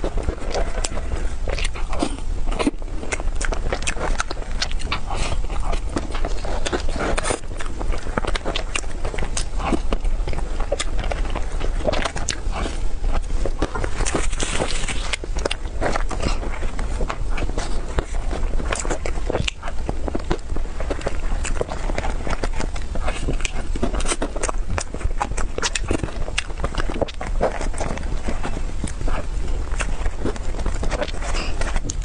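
Close-miked eating sounds of soft cream cake: a dense run of wet mouth clicks and smacks while chewing, with a plastic spoon scraping and digging through the cake.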